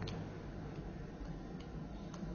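Quiet pause with a steady low hum of room or recording noise. A few faint, short clicks come through, one right at the start and one about one and a half seconds in.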